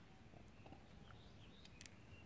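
Near silence, with faint high chirps and a couple of light clicks near the end.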